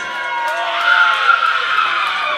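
A high-pitched voice yelling in long, held shrieks over a hiss of crowd noise.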